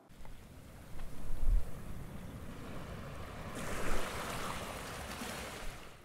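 Wind and water noise, with an uneven low rumble throughout and a brighter hiss joining a little past the halfway point.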